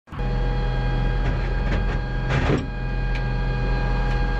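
Steady hum of the M109 Paladin howitzer's running machinery heard inside the turret, with a few sharp metallic knocks and a louder clatter about two and a half seconds in as the crew handles the breech and ammunition.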